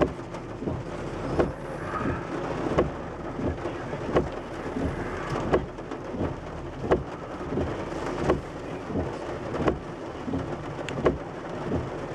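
Rain falling on a car's roof and windshield, heard from inside the cabin as a steady wash of many small drop ticks. The windshield wipers sweep across the glass about once every second and a half.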